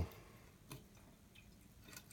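Faint small clicks and a few water drips inside a toilet tank as the flush lever's arm and flapper chain are handled, with a sharper click just under a second in.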